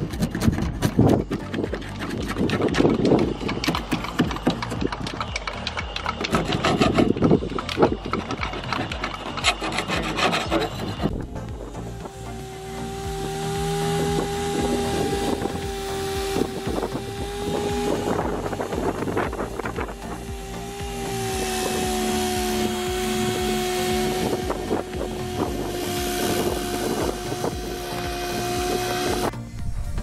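Metal putty knife scraping flaking rust and paint off a van's steel door panel, in short, uneven strokes. About eleven seconds in, a power drill turning a sanding disc starts on the rusty metal and runs with a steady whine and grinding until just before the end.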